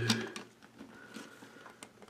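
Mostly quiet room with a few faint clicks of plastic: toy minifigures being shifted on the base of a building-block castle, after the tail of a spoken word.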